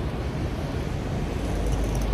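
Steady rushing background noise of an airport terminal hall, with a deep rumble that swells near the end.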